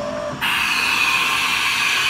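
Haas VF2 vertical mill starting an ATC reverse tool change cycle: a steady hiss comes on sharply about half a second in and holds.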